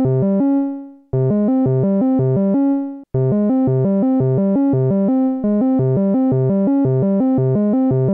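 Arturia MicroFreak synthesizer playing a fast, repeating sequence of short notes, about five a second, driven by a MIDI line written in Cubase's piano roll. The line breaks off twice, about half a second in and just before three seconds, each time on a longer note that fades out, then plays on steadily.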